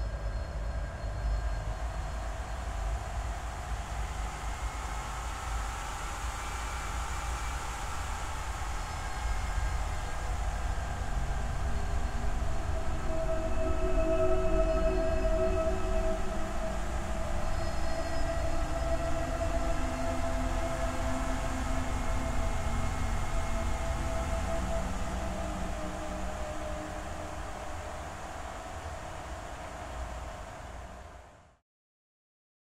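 A low, continuous rumble under several sustained tones that drift slowly in pitch, swelling to its loudest about halfway through and then fading away at the end.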